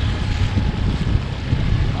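Small outboard motor running steadily as a dinghy moves under way, with wind buffeting the microphone.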